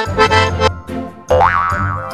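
Piano accordion playing sustained chords that stop a little over half a second in. About a second later comes a cartoon 'boing' sound effect, a quick rising glide.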